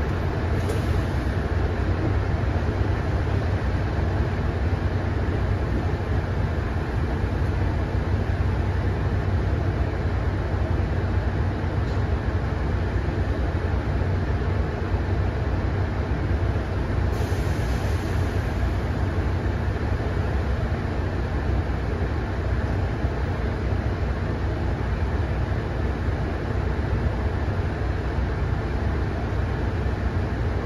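Inside a Mercedes-Benz O530 Citaro diesel single-deck bus standing at a junction, the engine idles with a steady low hum. Two short hisses come through, one about a second in and one about seventeen seconds in.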